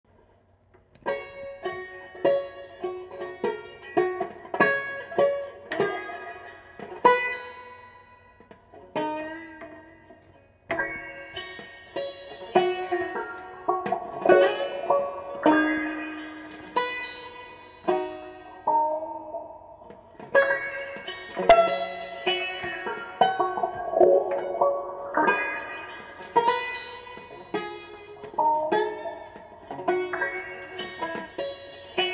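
Four-string Framus resonator banjo being picked, playing a tune of single plucked notes and chords that each ring briefly and fade. The playing starts about a second in and has a quieter stretch around nine to ten seconds before going on.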